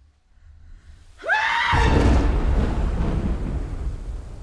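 A short scream that slides up and then down in pitch, about a second in, running straight into a loud, deep rumbling boom that slowly fades: a horror-film scare sting.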